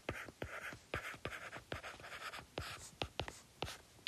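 Stylus writing on a tablet: short scratchy strokes broken by sharp taps as the pen tip touches down and lifts, several a second.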